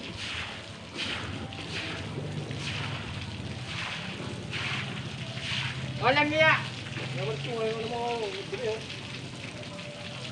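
Shovel or trowel scraping through wet concrete in short strokes about once a second. A voice calls out loudly, wavering in pitch, about six seconds in, followed by talking, all over a low steady hum.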